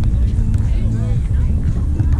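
Outdoor beach ambience: a steady low rumble under distant, indistinct voices of people on the sand courts.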